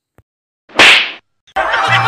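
A single loud slap, a sharp smack about a second in that dies away within half a second.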